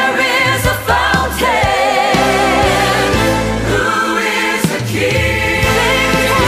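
Choir singing a worship anthem with orchestral accompaniment, the voices holding long notes with vibrato over sustained bass.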